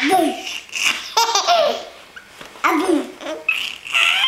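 Baby laughing in repeated short bursts, about four, with pauses between them.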